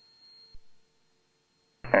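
Near silence in a gap between air traffic control radio transmissions: a faint steady tone and a small click about half a second in. A controller's voice over the radio starts near the end.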